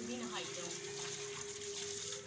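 Water running from a hose and splashing onto bare feet and a concrete floor, an even hiss with a steady tone under it.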